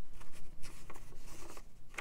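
A sheet of paper rustling and crinkling softly as it is handled and flexed.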